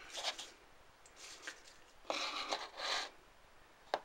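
Paper slips rustling in a plastic bowl as they are shuffled and one is picked out, in three short bursts of rustling, the longest about two seconds in, with a sharp click near the end.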